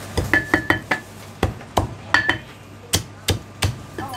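A heavy Chinese cleaver chopping cooked poultry through bone onto a thick round wooden chopping block. It lands about a dozen sharp, irregular strokes, some grouped in quick runs, and several leave a short metallic ring from the blade.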